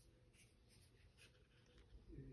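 Very faint scratching and a few light ticks of a small precision screwdriver working the screws of a smartphone's inner frame.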